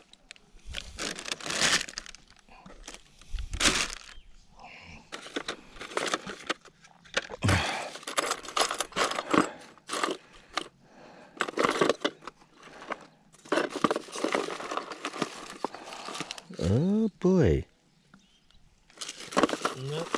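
Close rustling and crinkling handling noise from fishing tackle, plastic and packaging being worked by hand, in irregular bursts. A short voice sound comes near the end.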